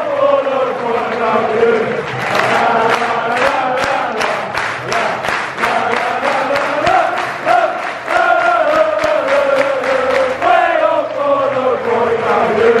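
Football supporters singing a chant in unison with rhythmic handclaps keeping time, heard from among the crowd in the stand.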